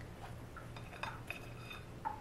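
A few faint taps and light clinks as a chef's knife cuts through toasted grilled cheese on a plastic cutting board and the quarters are set on a ceramic plate.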